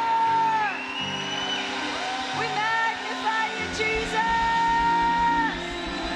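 Live church worship band playing sustained chords, with long held, gliding vocal notes and voices calling out in praise over it. A low bass part comes in about three and a half seconds in.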